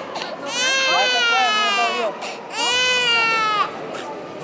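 Infant crying hard: two long, high-pitched cries, each dropping in pitch at its end, with a breath between them.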